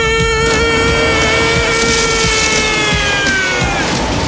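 A man's voice holding one long, high sung note that sags in pitch and breaks off near the end, over the low rumble and jolts of an off-road vehicle driven fast over rough ground.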